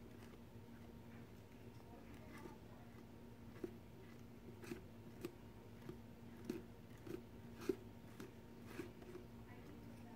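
Faint, irregular dabbing and tapping of a silicone brush working modeling paste through a stencil, about ten soft clicks in the second half, over a steady low hum.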